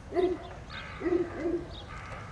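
A bird calling in short, low hooting notes, five or six of them, each rising and falling in pitch, with gaps of about half a second between them.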